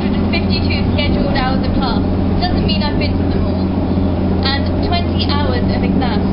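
Steady low rumble and hum inside a Eurotunnel shuttle wagon as the train runs, with a woman talking over it in short phrases.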